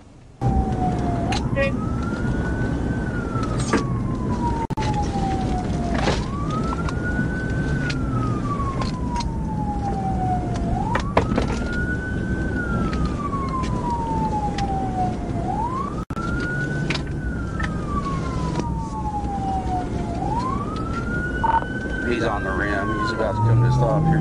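Police car siren on wail, sweeping up quickly and falling slowly about every five seconds, over the steady road rumble of the pursuing cruiser.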